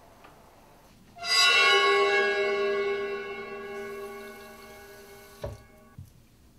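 A single bell-like chime struck about a second in, many tones ringing together and slowly dying away over about four seconds, a music cue in the soundtrack. A short knock sounds near the end.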